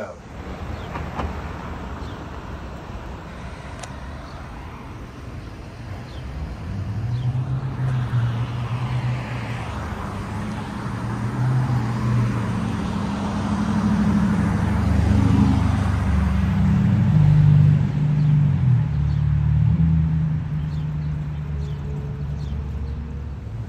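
City street traffic with cars running close by. A vehicle engine grows louder about a third of the way in and eases off near the end.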